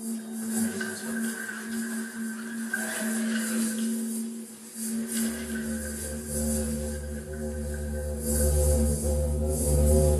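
Electronic granular-synthesis drone piece playing: sustained steady tones with a flickering high hiss above them. A deep low drone comes in about five seconds in.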